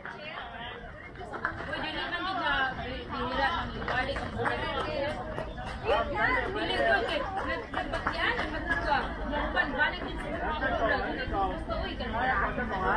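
Several people chatting at once, their voices overlapping, over a low steady rumble.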